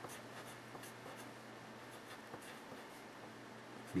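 Dixon Ticonderoga wooden pencil writing digits on paper: faint, short scratching strokes.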